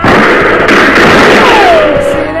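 A sudden loud burst of noise lasting about two seconds drowns out the song. Near the end a single note slides downward.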